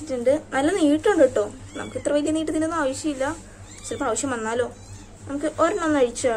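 A domestic cat meowing several times, with a person's voice alongside.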